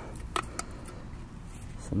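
A single short click with a brief ring about half a second in, then a fainter tick: the fold-out handle of a camping mess-kit frying pan being swung out. Faint steady outdoor background noise throughout.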